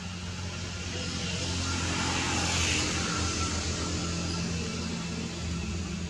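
A motor vehicle passing: a swell of noise that peaks about halfway through and fades, over a steady low hum.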